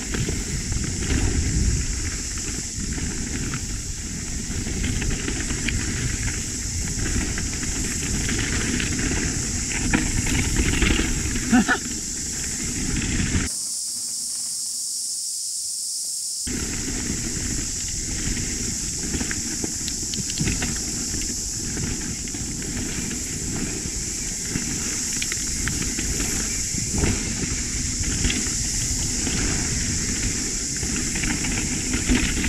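Mountain bike riding fast down a dirt trail, heard from the rider's point-of-view camera: a steady rush of wind and tyre noise with clattering from the bike over the rough ground, under a constant high hiss. About thirteen seconds in, the low rumble drops out for about three seconds, leaving only the hiss, then returns.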